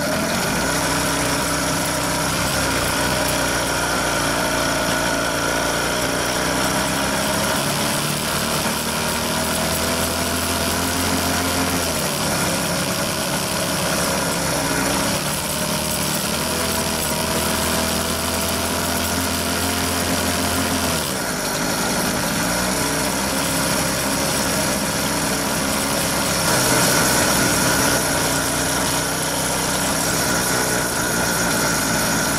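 Jawa Babetta 210 moped's small single-cylinder two-stroke engine running under way. Its pitch climbs with speed and then drops sharply as the throttle eases, twice, about twelve and twenty-one seconds in.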